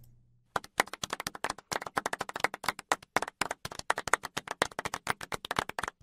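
A recorded golf clap: a few people clapping politely, a dense run of irregular claps that starts about half a second in.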